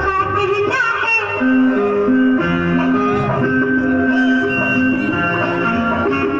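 Recorded Hindi song playing over a loudspeaker system: a sung phrase ends about a second in, then an instrumental passage of held notes follows.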